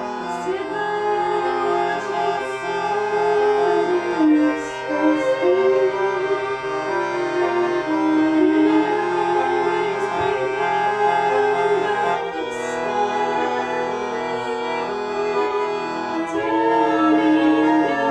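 Piano accordion and violin playing an instrumental passage of held chords, the notes changing every second or two, with the bowed violin line over the accordion.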